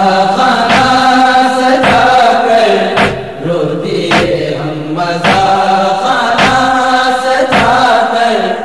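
Nohay lament: male vocal chant in long held, slowly moving notes, without words, over a sharp regular beat about once a second, the steady chest-beating (matam) rhythm that carries a nohay.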